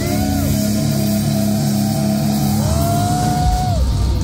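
Live metal band playing: sustained heavy chords under a long high note that slides up, holds for about a second, and drops away near the end.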